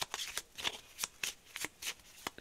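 A deck of oracle cards being shuffled by hand: a quick run of crisp card snaps, about four a second.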